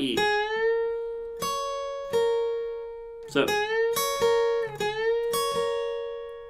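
Steel-string acoustic guitar tuned down a half step, playing a string bend at the tenth fret of the B string with the tenth fret of the high E string picked against it. The bent note glides up and rings, and the bend is struck twice, with a few more single notes picked in between.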